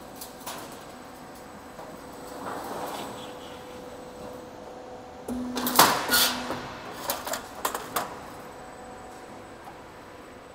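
Hydraulic cutting unit of a ridge cap roll forming machine cutting the formed steel profile. A hum comes on a little past five seconds, the cut lands about six seconds in as a loud metallic clank, and a few sharp clicks follow over the next two seconds. A faint steady machine hum runs underneath.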